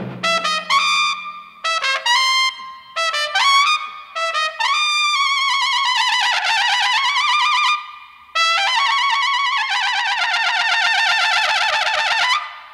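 Jazz trumpet playing in short phrases of scooped, rising notes, then a long note with wide vibrato that bends down and back up, and from about eight seconds in a long held note with vibrato. A brief low thump sounds at the very start.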